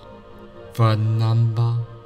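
Soft ambient meditation music with steady held tones. About a second in, a man's deep voice intones one long, drawn-out syllable for about a second, over the music.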